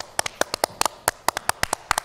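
A small group of people clapping: quick, uneven claps, about eight a second.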